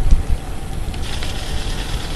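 Wind buffeting a GoPro camera's microphone on a moving bicycle, a steady low rumble mixed with tyre noise on a rough lane, strongest just after the start.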